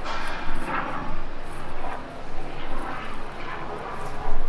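Steady city street ambience: the rumble of traffic on a downtown street, with an overhead aircraft or passing engine noise mixed in.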